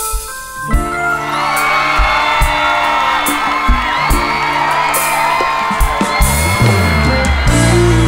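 Live band playing the instrumental introduction of a song, with drums, bass and a lead melody that bends between notes coming in together about a second in. A low run slides downward near the end.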